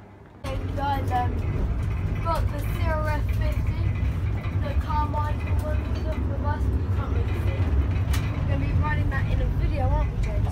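Steady low engine and road rumble heard from inside a moving car's cabin, starting suddenly about half a second in, with people's voices talking over it.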